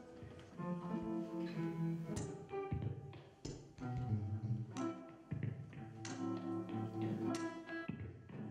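Acoustic guitar played live: plucked chords and single notes with sharp attacks that ring and decay, over low bass notes.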